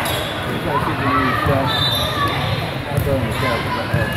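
Echoing din of an indoor volleyball hall: many voices of players and spectators calling out over one another, with volleyballs being struck and bouncing on the courts.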